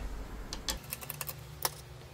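A quick irregular series of small, sharp clicks and taps: a screwdriver and small parts being handled on a bare motherboard, the loudest click about one and a half seconds in.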